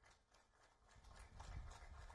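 Near silence, with faint rapid clicking that picks up about a second in.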